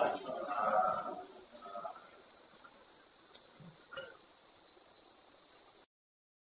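A brief stretch of voice in the first second or two, over a steady high-pitched tone that runs on until the recording cuts off to silence just before the end.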